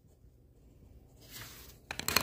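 Pencil writing on paper: after about a second, a faint stretch of scratching, ending with a small click near the end.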